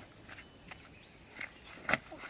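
Footsteps on loose river stones at the water's edge: a few irregular clacks and knocks of stone underfoot, the loudest just before the end.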